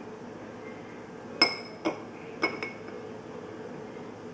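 A clear measuring cup clinking against the rim of a drinking glass as it is set upside down on top of it: four short ringing clinks in two pairs, the first the loudest.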